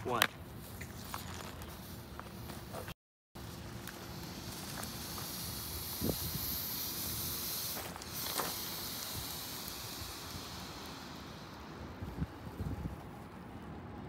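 A smashed lithium-ion phone battery venting in thermal runaway: a steady hiss of escaping gas that builds a few seconds in, is loudest in the middle and fades toward the end.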